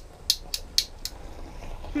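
Hand-held lighter being clicked over and over at a gas hob burner, about five sharp clicks in the first second and a half: repeated attempts to light the burner that have not yet caught.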